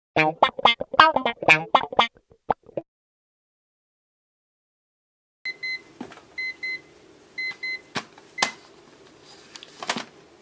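A quick run of staccato sung syllables lasting under three seconds, then silence. After that comes a string of short high electronic beeps, mostly in pairs, with a few sharp clicks and a low steady hum underneath.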